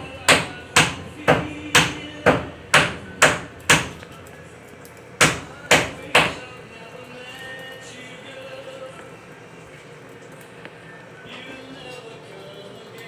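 Heavy, evenly paced chopping strokes on a cutting board, about two a second: eight in a row, a short pause, then three more. After that only a faint background remains.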